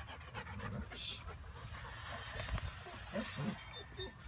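A dog panting while it plays, with a few faint short vocal sounds about three seconds in.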